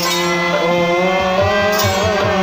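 Bengali kirtan music: a gliding sung melody over a steady drone, with low strokes of a khol drum coming in about a second and a half in, several a second, and a brief high clash near the end.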